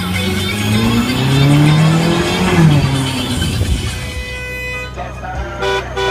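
Sports car engine accelerating, its note rising for about two seconds before dropping away sharply, over music; a steady rhythmic music beat takes over near the end.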